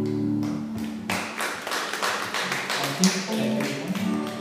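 An acoustic band's chord on guitar, mandolin and bass rings out and fades in the first half second. It is followed by about three seconds of irregular taps with a few stray plucked notes, before a new chord starts at the very end.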